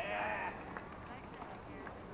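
A person's voice gives one short call, about half a second long, right at the start. After it there is only the low background of the courts.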